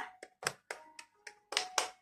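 A person clapping their hands, several quick, unevenly spaced claps.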